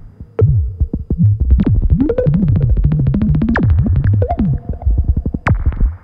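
Buchla Red Panel modular synthesizer playing a fast, busy sequence of short clicky notes over low tones that step and glide in pitch. It cuts out for a moment at the start, then runs densely, dipping again just before the end.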